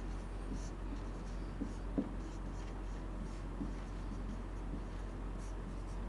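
Marker pen writing on a whiteboard: faint, short scratching strokes as a formula is written out, with one sharper tap about two seconds in, over a steady low hum.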